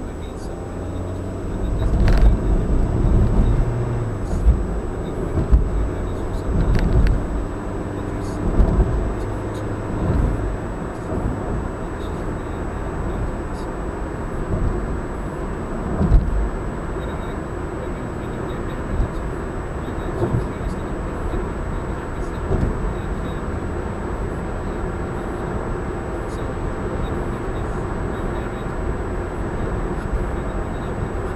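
Car road and engine noise heard from inside the cabin: a steady low rumble of tyres and engine, with uneven low thumps and swells over the first ten seconds or so and one more a few seconds later, then an even drone as the car cruises.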